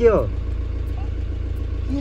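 Car engine running, a steady low rumble heard inside the cabin. A short spoken word comes at the very start.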